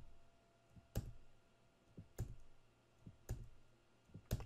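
Single keystrokes on a computer keyboard, about one a second, each a sharp click with a short tail: keys pressed one at a time to step through a setup wizard's prompts.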